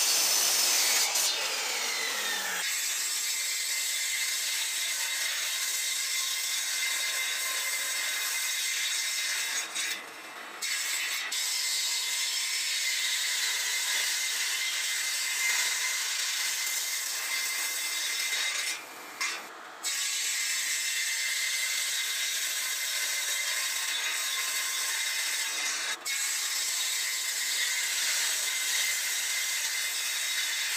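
A miter saw cutting pine, its whine falling over about two seconds as the blade spins down, then cutting off. After that, a table saw runs steadily as pine boards are ripped into strips, the sound dipping briefly twice.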